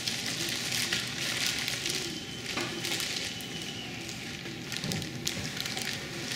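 Plastic wrapping crinkling and rustling as a plastic-wrapped banding machine is handled and lifted out of its cardboard box, with a few light knocks.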